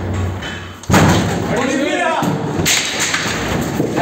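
A door being forced open by police: a heavy thud about a second in, then men shouting.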